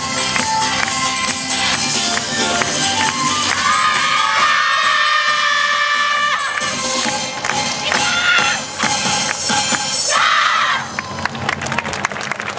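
Yosakoi-style dance-team music playing with a steady beat, then the dancers' drawn-out group shouts and cheers over the closing bars. The music cuts off near the end.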